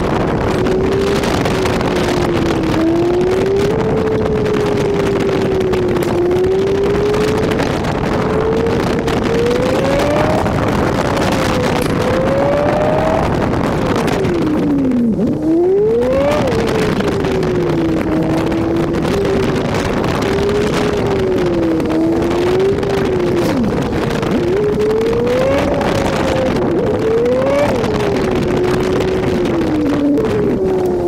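Honda Civic Si engine running under load, its pitch rising and falling with throttle and gear changes. About halfway through the pitch dips sharply and climbs back, and there are further quick rises near the end, all over steady wind and road noise.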